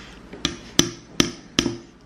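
A metal spoon tapping against a glass bowl: four sharp taps, evenly spaced about two or three a second, each with a short ring.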